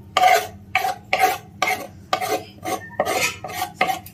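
Kitchen knife chopping a pile of fresh leafy greens on a wooden board. The chops come as a steady series of short strokes, about two a second.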